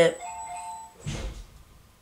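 A short electronic chime, two steady notes sounding together for just under a second, followed about a second in by a short breath.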